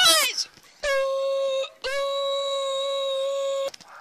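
A child's high shout breaking off, then two long notes held at one steady pitch, the second about twice as long as the first.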